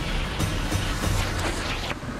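Fast white water rushing and breaking, with several brief splashes as waves crash over a person, under a dramatic music score with a steady low drone.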